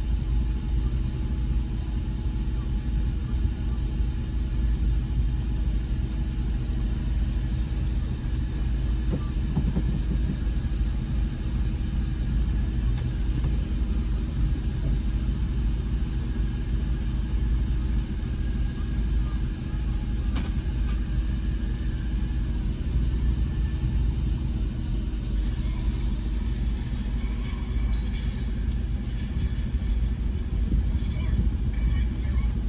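Car idling at a standstill, heard from inside the cabin as a steady low hum.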